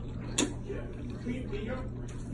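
Eating sounds: a forkful of spicy instant noodles being slurped and chewed close to the microphone, with one sharp click about half a second in.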